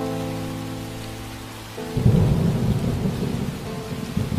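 Rain falling, with a low rumble of thunder starting about two seconds in and running on. Before the thunder, a held pitched tone slowly fades out.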